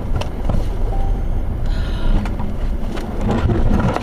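A car running off a snowy road into the snowbank, heard from inside the cabin: a steady low rumble of engine and tyres on packed snow, with several knocks and heavier bumps near the end as it ploughs into the snow.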